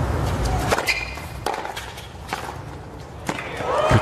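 Tennis balls struck by rackets during a rally: about four sharp hits roughly a second apart, over the low background of the crowd.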